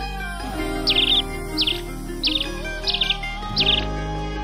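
Background music with a bird chirping over it: five short, high chirps, each a quick falling note run into a rapid trill, about two-thirds of a second apart.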